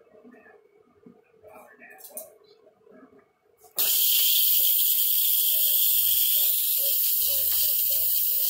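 Instant Pot electric pressure cooker vented by a quick release: the steam release valve is opened about four seconds in and a loud, steady hiss of escaping steam starts abruptly and keeps going as the pressure is let out after cooking.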